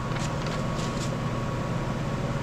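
Steady low mechanical hum with a thin whine running through it, and a few soft rustles of paper being handled in the first second.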